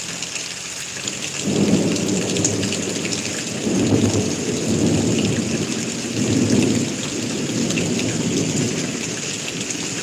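Thunder rolls in about a second and a half in, a long low rumble that swells several times. Steady rain falls throughout.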